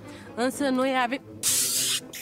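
A short phrase from a woman's voice, then a sharp hiss lasting about half a second near the end.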